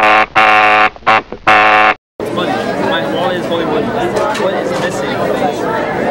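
A loud 'fail' buzzer sound effect in several blasts over the first two seconds, long ones with two short blips in the middle, marking a wrong answer. It cuts off abruptly, and after a moment's gap comes the chatter of many voices in a busy room.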